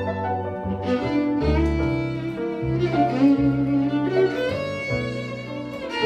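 Live jazz trio of violin, piano and upright double bass. The violin plays a bowed melody over the bass's low notes and piano chords.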